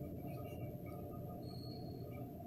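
Low, steady background noise of a room, with a faint short high squeak about one and a half seconds in.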